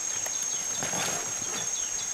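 A silverback eastern lowland gorilla tears into and crunches the fibrous stem of a wild banana plant, with a burst of tearing and crunching about a second in. A steady, high insect drone runs underneath.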